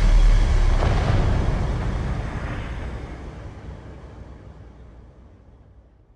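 Deep low boom from trailer sound design, its rumbling tail fading away steadily over about six seconds, with a faint knock about a second in.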